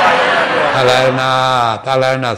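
A man's voice intoning a long, drawn-out phrase in a chant-like delivery, with a held, slowly falling pitch after a short hiss at the start.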